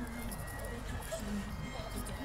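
Faint outdoor background of distant music and people's voices, with a steady low wind rumble on the microphone.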